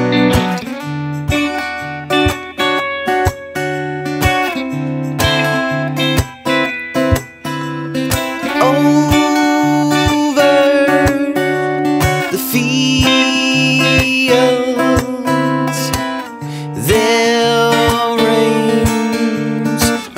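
An instrumental break in a folk song: acoustic guitar playing over a steady beat, with held melody notes above it.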